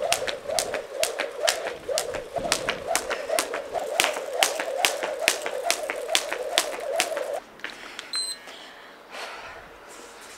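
A skipping rope slapping a hard rooftop floor about three times a second as someone jumps rope, with a steady hum alongside; both stop suddenly about seven seconds in.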